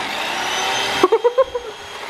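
Electric carving knife running as it cuts into a roast turkey, a steady motor buzz that cuts off suddenly about a second in.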